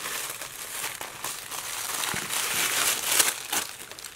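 Thin wrapping paper crinkling and rustling irregularly as hands unwrap a gift package, with a few short crackles.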